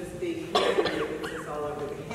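A woman speaking into a microphone, broken about half a second in by a short cough, after which the talk goes on.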